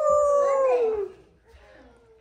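A young child's voice: one long, high, held call that slides slightly down in pitch and stops about a second in.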